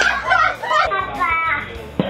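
Voices throughout, no clear words: shrieking and laughing, then a sudden change to children's voices with music behind them.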